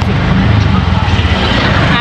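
Engine rumble and road noise heard from inside a moving vehicle, with a hiss that swells about a second in.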